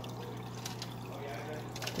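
Aquarium water trickling and sloshing as a net is pushed through the tank, over a steady low hum.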